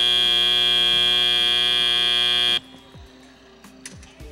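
FRC field's end-of-match buzzer sounding one long, steady buzz that cuts off suddenly after about three seconds, marking the end of the match.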